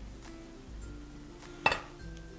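Soft background music, and one sharp glass clink about three-quarters of the way through as an upturned glass bowl knocks against the plate while moulding rice.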